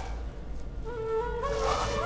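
Background score: after a quiet start, a held flute-like wind-instrument note enters about a second in and steps up in pitch.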